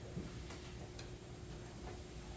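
A few faint footsteps on a hard floor, three light ticks about half a second to a second apart, over low room hum.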